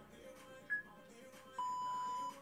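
Interval timer beeping at the end of a work interval: a short high beep, then about a second later a longer, lower beep as the countdown hits zero and the rest period starts.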